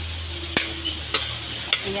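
Metal spatula stirring diced broccoli stem and ground meat in a metal wok over sizzling oil, with three sharp clinks of the spatula on the pan, about half a second apart.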